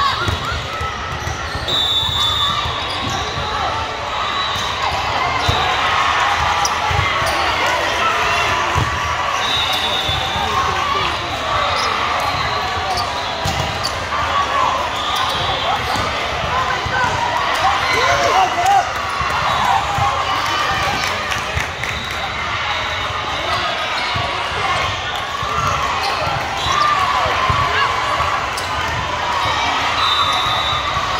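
Indoor volleyball rally sounds in a large gym hall: a volleyball struck and bouncing on the court now and then, a few short high squeaks, over steady chatter and calls from players and spectators.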